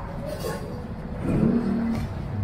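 A motor vehicle engine revving on the street, loudest about a second and a half in, over steady street noise.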